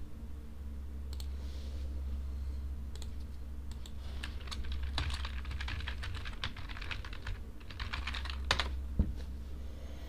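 Computer keyboard typing, keys clicking in quick irregular runs over a steady low hum.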